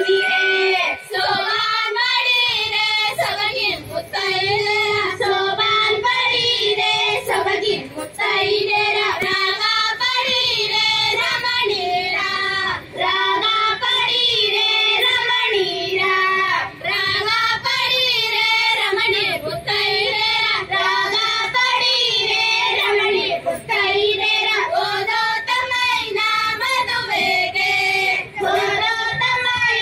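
High women's voices singing a folk song, a continuous melody in short phrases with wavering held notes.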